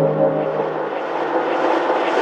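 Drum and bass build-up: a whooshing noise sweep rises steadily in pitch as the held synth chords fade out, with no beat under it.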